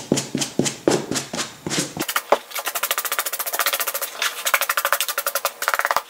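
Suede brush scrubbed back and forth over a suede leather boot: scratchy strokes about three a second for the first two seconds, then quick short strokes about ten a second, with one sharp click just after the change.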